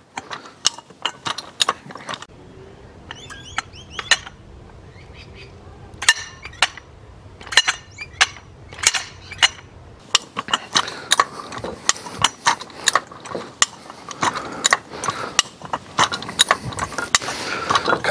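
Hi-Lift jack being worked up its steel bar by the handle: the climbing pins ratchet and clack in sharp metallic clicks, a few at a time at first, then coming thick and fast through the second half.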